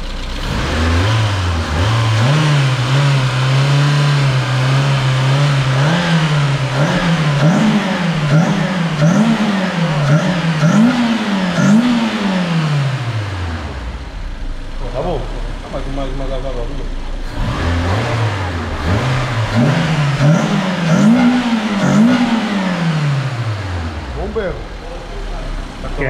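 A car's 16-valve four-cylinder petrol engine starts and idles, then is blipped up and down about once a second before it is switched off and spins down. A few seconds later it starts again, is revved several more times and winds down to a stop once more.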